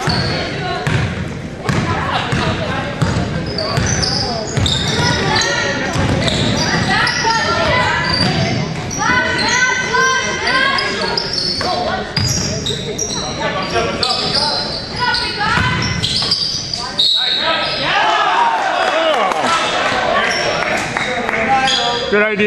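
A basketball bouncing on a hardwood gym floor among the shouts of players and spectators, echoing in a large gym.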